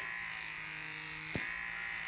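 Handheld microdermabrasion wand's vacuum motor running steadily with a high-pitched whine, set to its highest suction. There is one short click a little past halfway.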